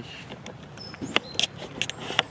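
Short high bird chirps from the trees, mixed with scattered clicks and rustles of a handheld camera being swung about.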